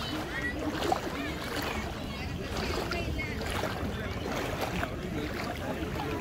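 Indistinct chatter of several people's voices over a steady low noise of wind and lapping water.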